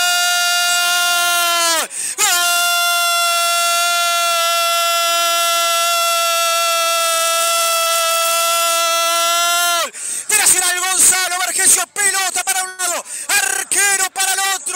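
A radio football commentator's long goal scream, a drawn-out "gol" held on one loud note, broken by a quick breath about two seconds in and held again until about ten seconds in, dropping in pitch as it ends. It signals a penalty kick converted, and gives way to rapid excited shouting near the end.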